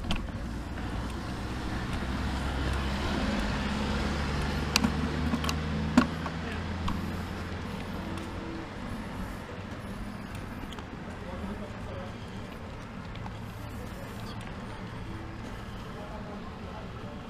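A car going by, its engine hum swelling over the first few seconds and fading after about six seconds, over steady road and wind noise from a moving bicycle. A few sharp clicks come near the middle.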